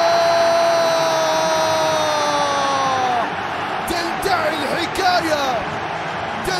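A TV football commentator's long held goal cry, one sustained note that sags in pitch and stops about three seconds in, over a stadium crowd cheering; short excited shouts follow.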